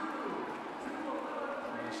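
Spectator crowd noise in an indoor pool, a steady hubbub with faint distant voices, as swimmers finish a race.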